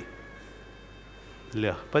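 A pause in a man's amplified talk with only a faint steady hum, then his voice comes back near the end.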